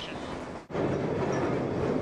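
Excursion-train passenger cars rolling along the track, heard from an open car as a steady, dense running noise. It drops out abruptly just under a second in and comes back louder.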